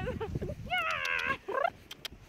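High-pitched, warbling human laughter in short bursts. The longest burst comes about a second in, and a short rising one follows before it dies away near the end.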